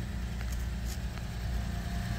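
Lexus IS 250's 2.5-litre V6 idling, a steady low hum, with a few faint clicks.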